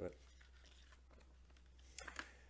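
Near silence with a faint low hum and quiet handling of a metal Blu-ray steelbook case, ending in a short click as the case is opened.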